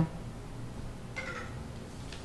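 Low steady room tone from the studio microphones in a pause between speech, with one brief faint sound just past a second in.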